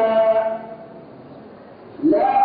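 A man's melodic Quran recitation: a held note in the reciter's voice ends about half a second in, followed by a breath pause of about a second and a half.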